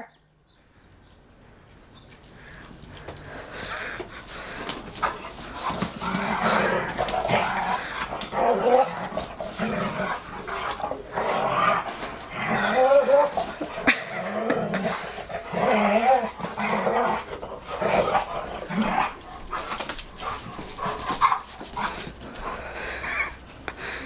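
Two dogs playing rough together, giving short repeated barks and yips. It starts almost quiet and builds, with the calls coming thick from about six seconds in.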